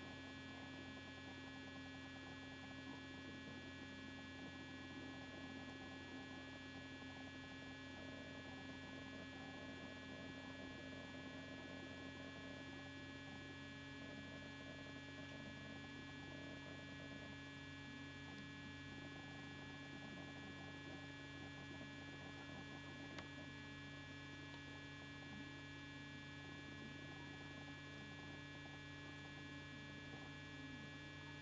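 Steady, faint electrical hum made of many fixed whining tones over low hiss: electronic noise picked up by a computer's recording setup. Nothing else stands out.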